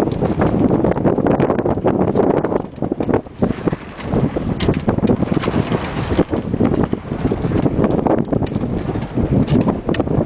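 Wind buffeting the microphone aboard a small sailboat under way, a loud, gusty rumble that eases briefly about three seconds in.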